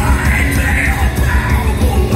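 Live metalcore band playing loud through a big PA, with a heavy low beat under a long, held scream that trails off near the end.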